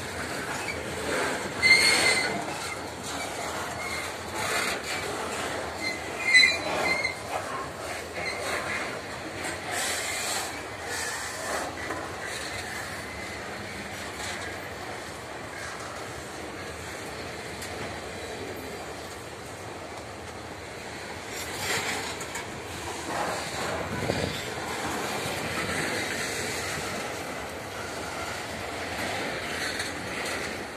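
Loaded grain hopper wagons of a long freight train rolling past on the rails: a steady rolling rumble with some wheel clatter. A brief high-pitched wheel squeal comes about two seconds in and again about six seconds in.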